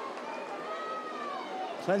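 Football stadium ambience during open play: a steady crowd hum with distant voices, and one drawn-out call from the crowd or pitch about halfway through. A commentator's voice comes in near the end.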